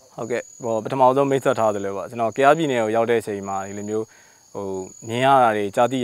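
A man speaking Burmese, with a short pause near the middle, over a steady high-pitched drone of insects.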